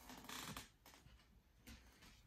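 Near silence, with a faint brief rustle of trading cards being handled in nitrile-gloved hands a fraction of a second in, and a faint tick near the end.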